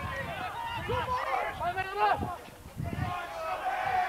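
Men's voices shouting across a rugby pitch around a ruck, several calls overlapping, with a short lull in the middle.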